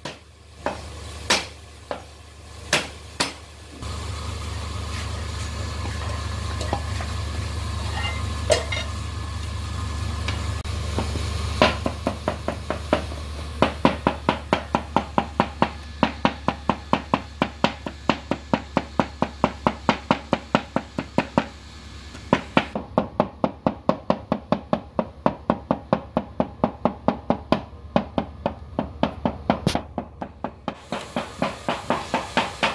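Cleaver chopping garlic cloves on a wooden cutting board: a few single blows at first, then rapid, even chopping at about three strokes a second for the rest. A low steady hum runs underneath through the middle.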